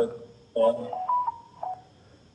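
A man's voice chanting the closing words of a Sanskrit verse, then a few short, quieter held notes that step in pitch as the chant trails off.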